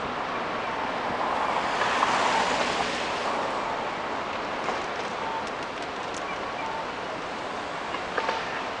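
City street traffic noise, a steady rush that swells about two seconds in as a vehicle passes, then settles back.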